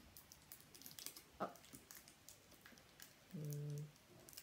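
Faint clicks and crinkles of hands working a rubber balloon onto a plastic drinking straw ready for sellotape, with a short hummed "mm" near the end.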